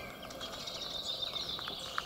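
Faint outdoor birdsong: small birds chirping and singing over a quiet background.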